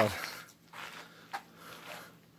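A man's voice trailing off at the very start, then faint scuffing and shuffling sounds with one sharp click a little over a second in.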